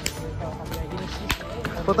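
Long whip being swung and cracked: three sharp cracks, the loudest about a second and a half in. The speaker calls it a very loud cracking sound.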